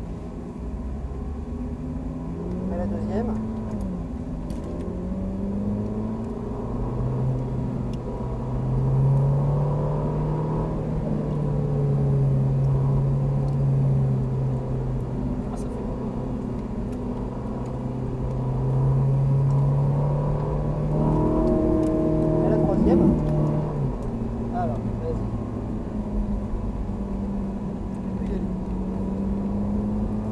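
Ferrari 458 Italia's 4.5-litre V8 heard from inside the cabin, pulling away and accelerating gently at moderate revs. The engine note climbs, drops at a gear change about four seconds in, climbs again, then holds fairly steady with slow rises and dips through the corners, including a brief change a little past twenty seconds.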